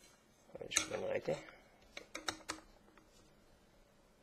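A few light, sharp clicks in quick succession about two seconds in, as the battery cover is fitted onto a box mod, following a single short spoken word.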